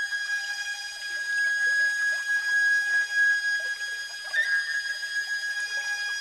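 A flute holding one long high note, with a short wavering flick in pitch about four and a half seconds in.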